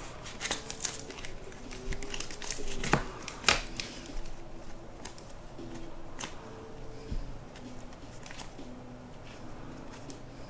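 Trading cards in plastic sleeves being picked up and handled: scattered clicks and rustles of plastic and card stock.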